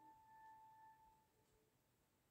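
Near silence with a few faint, pure sustained tones, like soft background music notes. One note rings for about the first second and fades, and a softer, lower note follows briefly.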